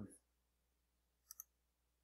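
Two quick, sharp computer mouse clicks about a second and a half in, otherwise near silence.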